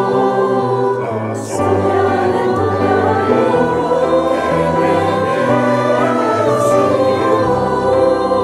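Mixed choir of men's and women's voices singing together in sustained, changing chords, with a short hiss of sung consonants twice.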